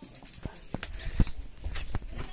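Footsteps on packed earth with knocks and rustles from a hand-held phone being carried: a string of irregular clicks and thuds, the loudest a little past a second in.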